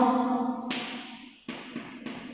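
A woman's voice holds a drawn-out syllable that stops under a second in. Then chalk scratches and taps on a blackboard, with one sharp tap about a second and a half in.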